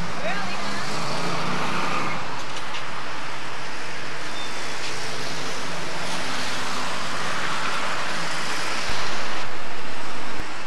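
Steady outdoor noise on a camcorder microphone, like traffic in a parking lot, with faint murmured voices. The level jumps up suddenly about nine seconds in.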